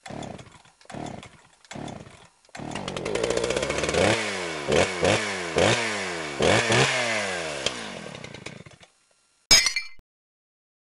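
Chainsaw engine in a logo sound effect. It gives three short bursts, then runs and is revved in about five quick blips, each falling back, before dying away. A single sharp bang comes near the end.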